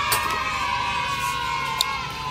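A long, steady call in the background, held on one slightly falling pitch, with a sharp click just after the start and another near the end as the shell of a chicken egg is cracked by hand.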